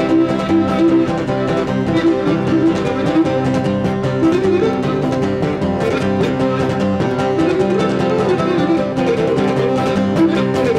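Cretan lyra playing the melody of a malevyziotis dance tune, accompanied by two laouta and an acoustic guitar.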